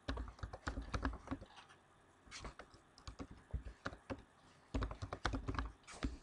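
Typing on a computer keyboard: quick runs of key clicks broken by short pauses, with the densest run near the end.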